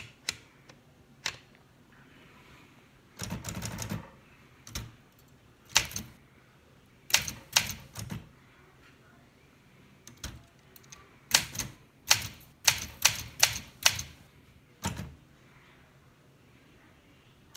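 1964 Olympia De Luxe manual portable typewriter being typed on slowly and unevenly: single key strikes and short runs of strikes with pauses between them, plus a longer, noisier clatter about three seconds in.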